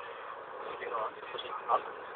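Steady car-cabin noise from the moving car's engine and road, with brief faint murmured words about a second in and again shortly before the end.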